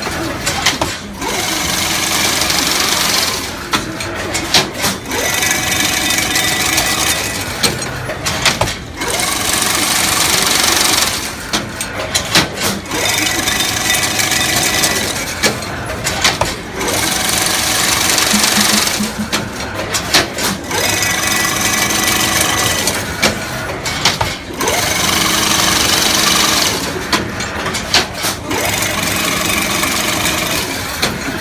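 Single-wire chain link fence weaving machine running in a repeating cycle about every four seconds: a loud whirring stretch of two to three seconds, then a short dip filled with sharp clicks and knocks.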